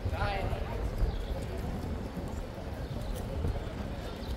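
Busy pedestrian-street ambience: a passer-by's voice briefly at the start, footsteps on stone paving, and a steady low rumble underneath.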